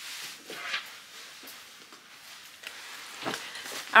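Faint sounds of a person moving about a small room off camera to fetch a handbag: a few soft knocks and rustles.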